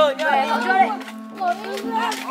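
Boys' voices talking over background music with steady held low notes.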